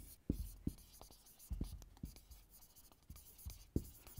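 Marker pen writing on a whiteboard: a faint run of short, irregular strokes and ticks as letters are formed.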